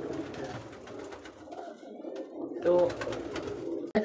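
A flock of domestic pigeons cooing together, their overlapping calls blending into a steady low drone.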